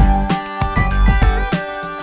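Instrumental background music, with melody notes changing every fraction of a second over a bass line.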